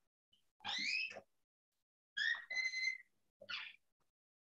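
Three short, high whistled calls: the first glides up in pitch, the second holds a steady high note, and a brief third call comes near the end.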